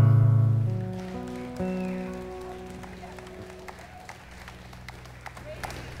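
A worship band's sustained chords ringing out and fading: a loud chord at the start and a second one about a second and a half in, each decaying slowly, with faint scattered clapping.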